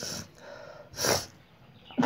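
A person's breath into a close microphone: two short, noisy breaths, the stronger one about a second in.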